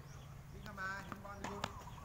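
Tennis balls hitting a hard court and a racket strings striking a ball: a few sharp, separate pops, two of them close together in the second half.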